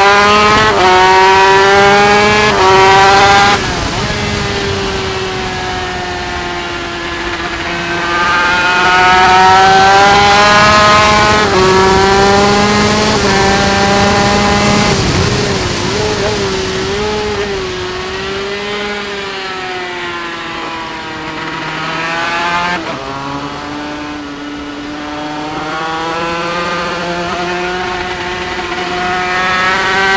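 Yamaha TZ250 two-stroke twin racing engine under hard acceleration, with wind rushing past the bike-mounted microphone. Early on the revs climb and drop sharply several times as it changes up through the gears. Later the pitch falls away for a corner and then climbs again.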